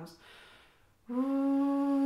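A soft breath, then about a second in a woman's voice starts one steady held note, sung while air keeps flowing through the mouth: the preparatory exercise for singing into the clarinet while playing, a klezmer technique.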